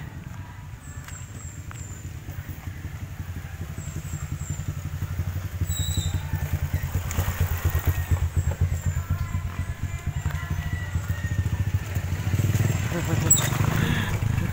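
Small motorcycle engine running as it comes up and passes on a rough gravel road. It grows louder to a peak about eight seconds in and rises again near the end.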